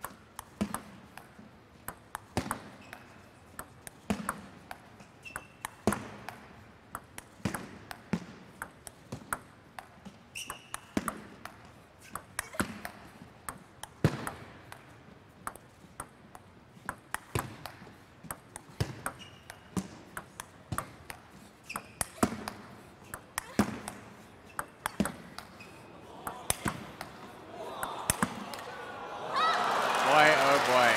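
A long table tennis rally: the celluloid-free plastic ball clicks off bats and the table in a steady back-and-forth, more than once a second. Near the end the crowd starts to cheer and applaud as the point ends.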